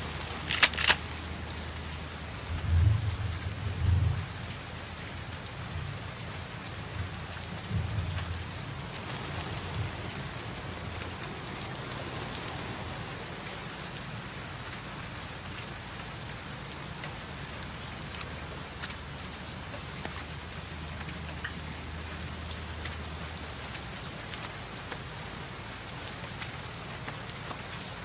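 Heavy rain falling steadily, with low rumbles of thunder a few seconds in and again around eight seconds.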